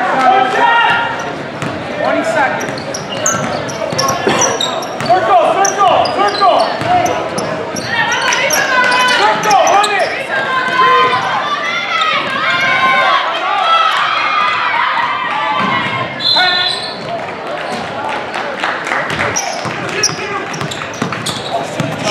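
A basketball bouncing on a hardwood gym floor during live play, mixed with indistinct shouts from players and spectators, all echoing in a large gymnasium.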